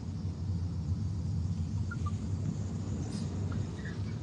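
Steady low rumble inside a car's cabin, the car held up in a traffic jam.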